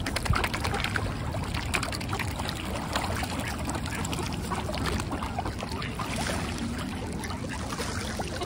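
Water splashing and lapping, with many small clicks, as a crowd of mute swans and mallard ducks dabble and jostle for food close by.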